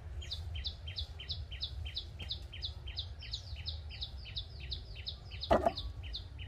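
A bird calls a fast, even series of short downward-slurred chirps, about three a second, over a low steady background rumble. A brief, louder knock comes near the end.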